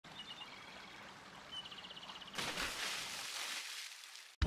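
Birds chirping over faint outdoor ambience, with a few short chirps and then a rapid trill. About halfway through, a sudden rush of water takes over and fades away.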